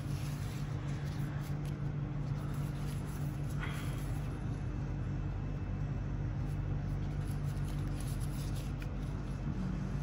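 A steady low hum that holds the same pitch throughout, with one brief faint sound about three and a half seconds in.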